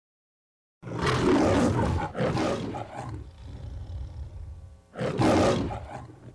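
An animal roar sound effect: two long roars starting about a second in, quieter sounds after them, then another loud roar about five seconds in.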